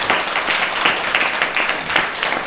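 A small audience applauding, many hands clapping at once, with one set of hands clapping close to the microphone.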